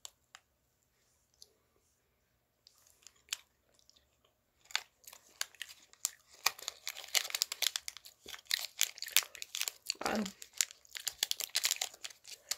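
Plastic candy wrapper crinkling in the hand: a few faint clicks at first, then a dense run of crackles starting about five seconds in.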